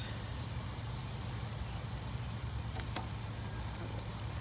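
Steady low outdoor background rumble, with a few faint clicks of cards being handled near the end.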